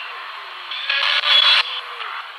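Handheld ghost box (spirit box) sweeping through radio stations: a steady hiss of radio static with a short, louder burst of static about a second in.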